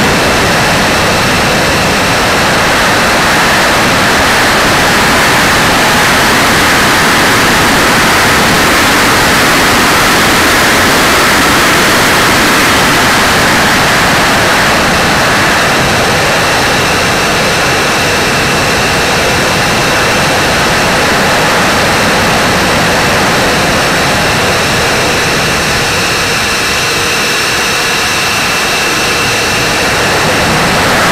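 Radio-controlled model plane in flight heard from its own onboard camera: a loud, steady rush of engine noise and air over the airframe, with a faint steady whine high up.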